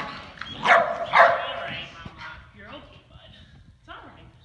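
A dog barking twice in quick succession, two short sharp barks a little under a second in, followed by fainter sounds.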